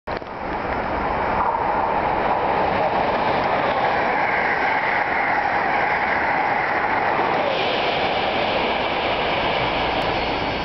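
Amtrak Acela Express electric high-speed trainset passing at speed without stopping: a loud, steady rush of wheels on rail and moving air, getting brighter in tone over the last couple of seconds.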